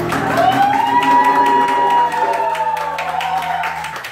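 Live acoustic band ending a song: a singer holds one long final note that slides up into place about half a second in, over a sustained low bass note, with light taps throughout. The music cuts off right at the end.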